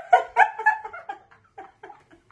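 Two women laughing hard: a run of short, breathless pulses of laughter, about four or five a second, fading as it goes.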